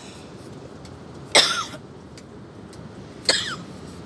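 A person coughing twice, two short sharp coughs about two seconds apart.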